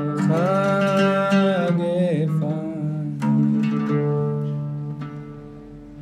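An oud played solo with a voice singing one long held note over it that bends down about two seconds in, then a few plucked oud notes ringing out and fading.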